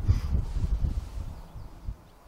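Wind buffeting the microphone: an uneven low rumble that fades away near the end.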